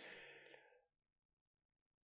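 Near silence, with only a faint breathy exhale from a man fading out in the first half second.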